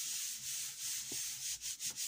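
A palm rubbing quickly back and forth over a sheet of card laid on inked Yupo paper, a dry swishing of skin on paper in repeated strokes. It presses the card down to lift the alcohol ink image off the Yupo onto the card.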